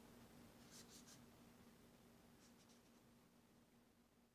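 Faint strokes of a Crayola washable marker's felt tip rubbing across sketchbook paper: a few short strokes about a second in and a few more around two and a half seconds, over near-silent room tone.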